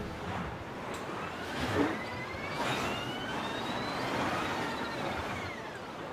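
City street traffic ambience: a steady wash of road noise from passing cars, with faint high tones gliding slowly up and down over it. It fades away near the end.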